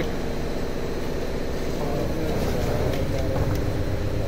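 Steady low mechanical hum of a liquid soap filling machine running, with a few constant tones above it and no distinct strokes or clicks.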